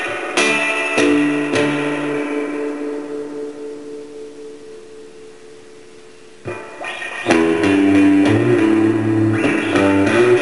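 Electric guitar played through a Fender combo amplifier: a few chords strummed, then one chord left ringing and slowly dying away. Playing starts again about six and a half seconds in and gets louder a second later.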